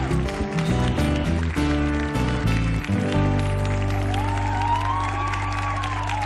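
Live acoustic sertanejo band playing an instrumental passage: steel-string acoustic guitars strummed over steady bass notes. In the second half a long held note rises and holds.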